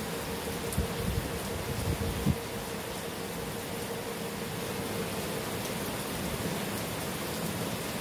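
Steady background hiss of noise, with a few low knocks or bumps in the first couple of seconds and a faint steady hum in the first half.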